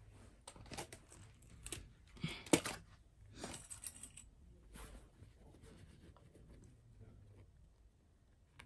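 Printed fabric rustling and crinkling in short bursts as it is handled and pinned by hand, the loudest about two and a half seconds in.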